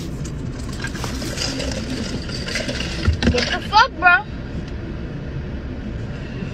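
Steady low rumble of a car's cabin. About four seconds in, two short high-pitched vocal sounds from a young child, each rising and then falling in pitch.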